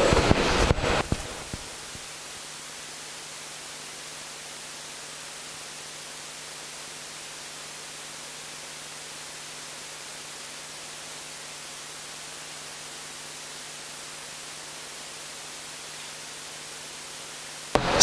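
Steady electronic hiss with a faint low hum, the noise floor of a live microphone and sound system, after a few brief clicks about a second in.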